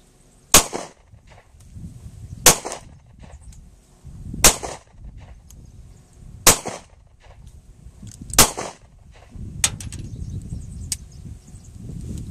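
Semi-automatic pistol fired five times at a slow, even pace, about two seconds between shots. A few much lighter clicks follow near the end.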